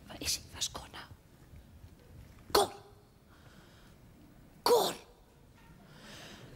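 A woman's voice making wordless sounds: a few short whispered hisses at the start, then two short, loud vocal exclamations about two seconds apart, each falling in pitch.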